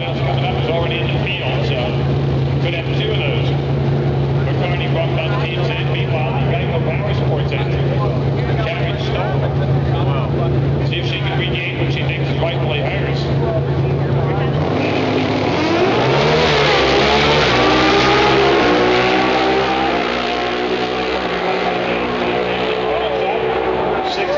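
Drag racing cars at a dragstrip: a steady low engine drone for about fifteen seconds, then engines rev and the cars pull away with the pitch rising, loudest a few seconds later and then easing off. Crowd and announcer voices are heard faintly throughout.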